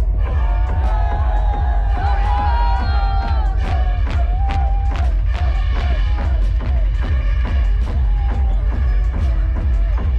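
Loud electronic dance music over a festival sound system, with heavy continuous bass, a steady beat and a sustained synth melody. Crowd noise is mixed in.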